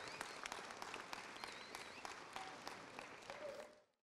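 Audience applauding, the clapping thinning out and fading down, with a faint high whistle or two. It cuts off shortly before the end.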